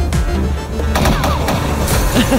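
Crime film trailer soundtrack: loud music with a heavy bass, cut by sharp gunshot-like hits near the start and about a second in.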